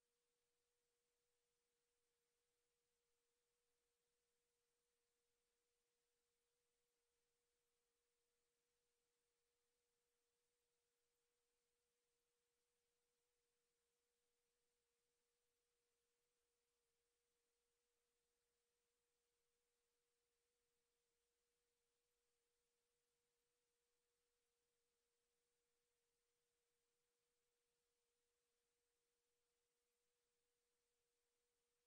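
Near silence: a very faint steady tone and nothing else.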